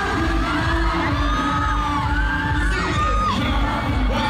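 Concert audio from a fan recording: live pop music with a steady bass beat under a cheering, screaming crowd.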